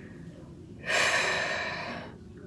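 A woman's heavy breath close to the microphone: a sudden breathy rush about a second in that fades away over about a second.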